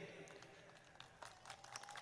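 Near silence: a pause between spoken phrases, with a few faint ticks.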